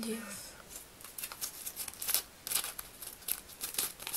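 A small folded slip of paper being unfolded by hand: a quick, irregular run of crinkles and crackles.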